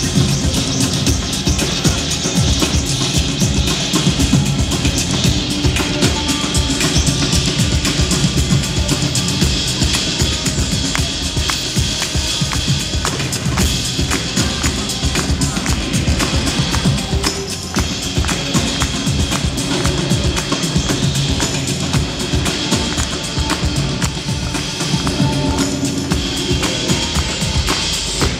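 Instrumental music built on drums and percussion: a dense, continuous run of strikes over held low tones, at a steady loudness.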